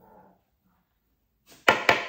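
A metal spoon tapped twice, sharply, against the rim of a blender jug to knock cocoa powder off it, each tap ringing briefly.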